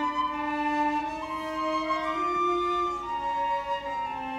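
Orchestra with solo viola playing contemporary classical music: long held notes that overlap and step slowly to new pitches.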